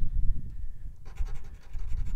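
Scratch coin scraping the coating off a scratch-off lottery ticket held on a wooden tabletop. Rapid scraping strokes start about a second in.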